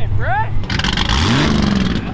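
A car's engine revving hard about a second in, climbing quickly in pitch and then holding high, over a loud rush of exhaust noise; a short rising shout comes just before.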